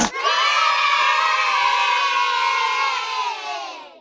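A crowd of voices cheering in one long, sustained shout, fading out near the end.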